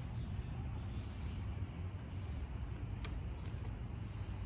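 Steady low outdoor rumble, with a few light clicks near the end as a disc and the cart's fabric pouch are handled.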